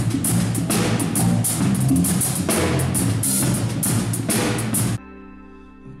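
A band playing live, with a drum kit's cymbals and drums striking steadily over bass and other pitched instruments. The music cuts off suddenly about five seconds in, leaving only a faint held tone.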